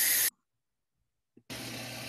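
Compressed air from an air-compressor hose hissing as it blows under an alligator's skin to part it from the meat, cutting off abruptly about a third of a second in. After a silence, a steady low hum comes in about a second and a half in.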